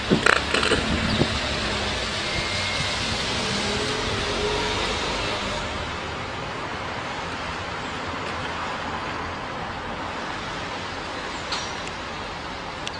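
Steady rushing noise of a motor vehicle or road traffic, with a few sharp knocks in the first second; the hiss eases after about five seconds.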